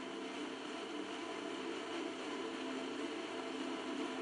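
Steady hiss of room background noise with a few faint, sustained low tones underneath.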